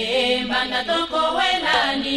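Opening of an African dance song: voices singing a chant-like melody without drums.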